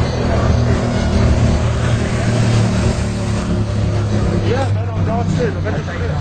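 Street traffic with a vehicle engine running steadily close by, and voices calling out briefly near the end.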